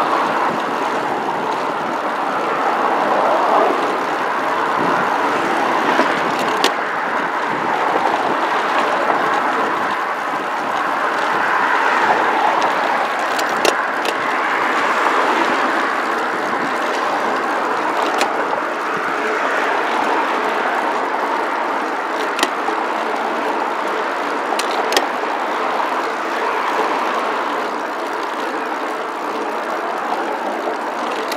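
Steady rush of wind and road noise from a camera riding a road bike at speed, with motor traffic passing on the highway alongside. A few sharp clicks break through now and then.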